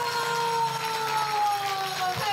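Group clapping with faint jingling of small hand bells, under one long held note that slowly falls in pitch.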